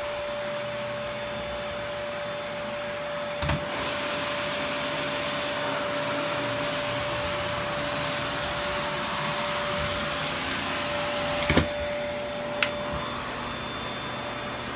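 Vacuum cleaner running steadily with a constant whine. A few short knocks sound about three and a half seconds in and twice near the end.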